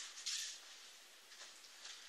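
Brief rustle of clothing and bodies moving on a training mat about a quarter second in, then faint room tone.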